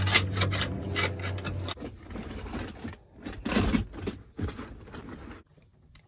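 Clicks and light rattles of loose wiring and plastic tailgate trim being handled, with a steady low hum that stops about two seconds in.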